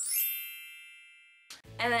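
A bright, shimmering chime sound effect for a title card: a single ding with a quick sparkle of high notes on top, ringing and fading away for about a second and a half before it cuts off.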